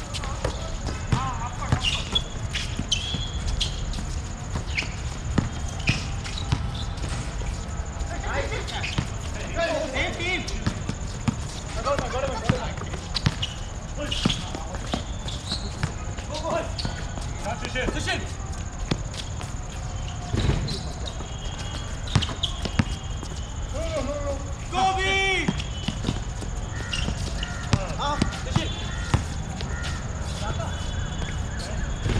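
A basketball bouncing on an outdoor hard court during a pickup game: irregular sharp thuds scattered through the play, with players calling out now and then.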